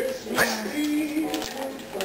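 Wrapping paper being ripped and crinkled off a present, with sharp crackling, over music. There is a short rising sound about half a second in.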